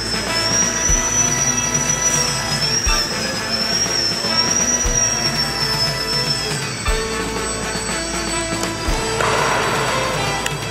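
Music playing, over the high whine of a small electric motor and propeller on an Electrifly VFO indoor RC plane. The whine wavers up and down in pitch with throttle and drops away about seven seconds in. A short rush of noise comes in near the end.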